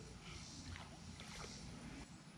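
Faint, steady outdoor background noise with no clear single source.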